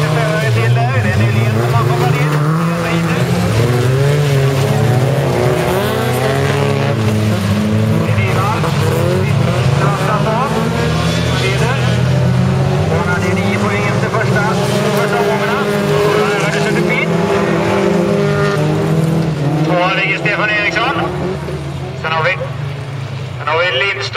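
Engines of several folkrace cars, old saloons, running hard together as the pack circles a dirt track, their pitches rising and falling over one another with throttle and gear changes.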